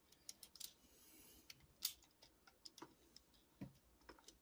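Faint clicks and taps of a plastic Transformers Studio Series 86 Arcee figure being handled, its leg pieces being pressed to tab into slots, with one sharper click a little under two seconds in.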